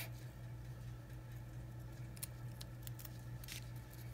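Craft scissors snipping through ribbon and a paper strip: a few faint, sharp clicks of the blades closing, mostly in the second half.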